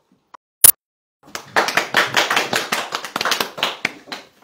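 A small audience clapping for about two and a half seconds, starting just over a second in, after one sharp click.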